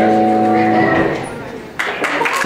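A rock band's final held chord through guitar amplifiers rings out and fades away over about a second, ending the song. Near the end, audience applause breaks out suddenly.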